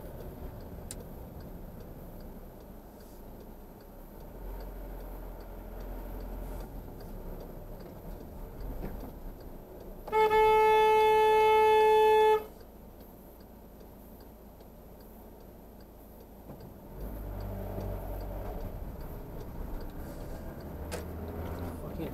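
A car horn sounds in one steady blast of a little over two seconds, about ten seconds in. Under it runs the low hum of a car engine and tyres, heard from inside the cabin.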